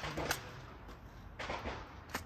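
Two faint, sharp cracks of gunfire echoing across an outdoor shooting range, one near the start and one a little past the middle.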